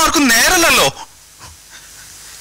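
A man speaking loudly for about the first second, then a pause with only faint hall noise.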